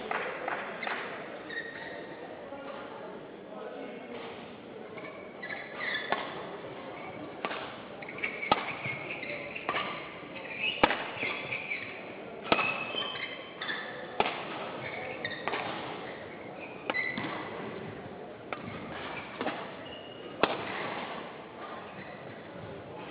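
Badminton rally: a shuttlecock is struck back and forth by rackets about once a second, some fifteen sharp hits with a short echo of a large hall. Brief high squeaks of court shoes come between the hits.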